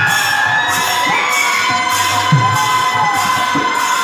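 Bengali harinam kirtan: a khol drum with a deep bass stroke that slides down in pitch a little past halfway, hand cymbals clashing in a steady beat, and a group of voices chanting.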